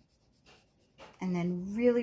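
Crayon rubbing on paper in faint strokes, a lavender wax crayon blending at medium pressure over blue. A woman's voice starts about a second in.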